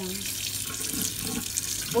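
Kitchen tap running steadily over a melamine foam cleaning sponge held in the stream, the water splashing into a stainless steel sink: the sponge being rinsed with plain water only.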